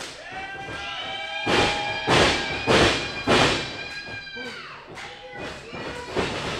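Four heavy thuds, evenly spaced about two-thirds of a second apart, in a pro wrestling ring.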